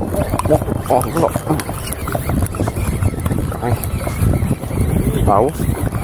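Voices talking over a steady rumble of wind on the microphone, aboard a small boat at sea.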